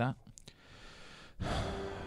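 A long breathy sigh into a close microphone, starting suddenly about one and a half seconds in and slowly fading.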